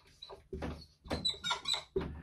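Dry-erase marker squeaking across a whiteboard in a series of short, separate strokes as words are handwritten.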